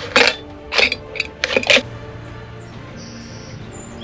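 A blade cutting through the top of an aluminium drink can, heard as a handful of sharp metallic crunches and clicks in the first two seconds. Steady background music carries on under and after them.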